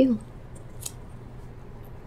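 Quiet room tone with a steady low hum, and a single short faint noise a little under a second in.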